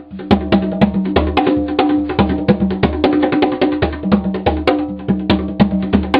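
A pair of conga drums played by hand in a rapid, steady pattern, alternating between the lower and higher drum's ringing open tones with sharp slaps in between. The playing breaks off for a moment right at the start, then runs on without a pause.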